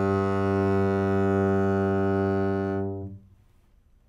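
Double bass played with the bow: one long low note at steady pitch, ending about three seconds in.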